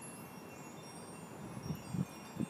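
Faint, scattered high ringing tones over a quiet background, with a couple of soft knocks near the end.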